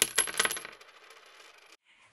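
Channel intro sound effect: a quick run of sharp, bright clinks over a high ringing tone, thinning out in the first second and fading away, then a moment of near silence.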